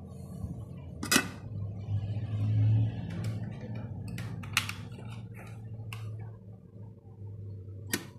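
A few short clicks and knocks from handling a rice cooker with its glass lid, over a low steady hum. At the end comes a sharp click as the rice cooker's Cook switch is pressed down to start cooking.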